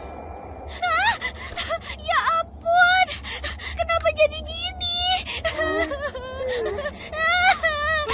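A young girl's voice whimpering and speaking tearfully in distress, her pitch wavering and trembling.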